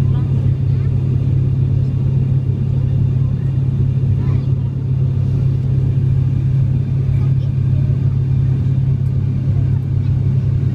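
Steady low drone of a turboprop airliner's engines and propellers, heard inside the passenger cabin.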